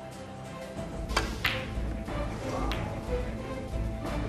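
A snooker cue strikes the cue ball with a sharp click about a second in, and a second click follows a moment later as the balls meet. A fainter click comes near three seconds, all over a low, pulsing music score.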